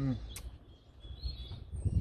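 A few faint, high bird chirps in the background, with a single sharp click about half a second in and a low rumbling noise underneath.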